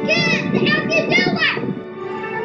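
A child's high voice making several short cries that rise and fall in pitch, over steady background music.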